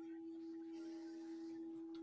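A faint, steady humming tone held at one pitch, with a couple of weaker higher tones alongside it.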